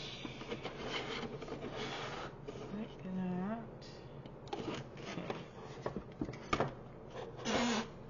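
Cardstock rustling, rubbing and sliding as a folded paper house shell is handled and lifted off its inner frame, with a few sharp taps of card on the desk.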